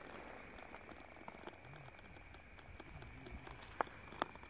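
Faint ambient noise with a steady high-pitched tone, scattered soft clicks and faint low wavering sounds; one sharper click just before the end.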